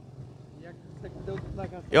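Motorcycle engine running steadily while riding at low speed, a low hum that fades near the end.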